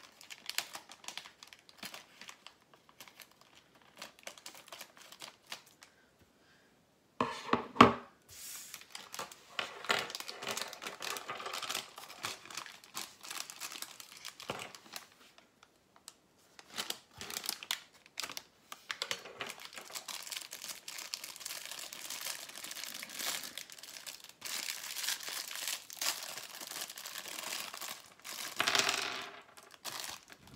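Plastic Lego minifigure blind bag being cut open with scissors, torn and crinkled as its contents are taken out. A few small clicks at first, a loud crackle about seven seconds in, then long stretches of crinkling with short pauses.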